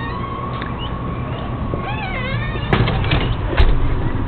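Footsteps and handling noise from a handheld camera as a person walks out through a glass entry door, with two sharp clicks in the second half.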